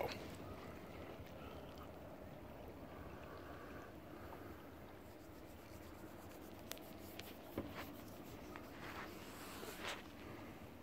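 Faint outdoor ambience at the water's edge: a low steady hush, with a few soft clicks and taps in the second half.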